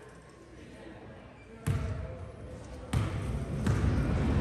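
Basketball bounced on a hardwood gym floor before a free throw, a few single sharp bounces about a second apart, with the murmur of voices in the hall behind.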